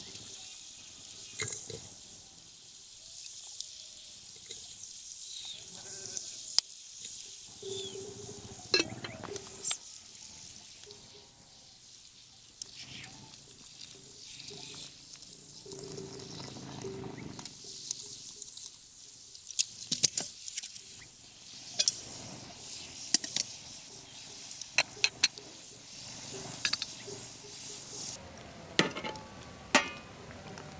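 Handling sounds of tea being made by hand: sharp clinks and knocks of a glass teapot, its lid and a knife on a wooden board, with hot water poured from a metal kettle into the glass teapot around the middle, and metal tongs tapping a metal lid near the end.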